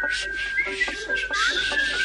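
A man whistling a high, mostly level note with small slides up and down, over banjo picking.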